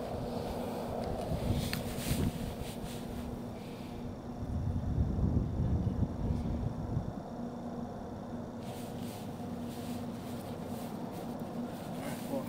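Outdoor ambience: a steady low hum with wind rumbling on the microphone for a few seconds in the middle.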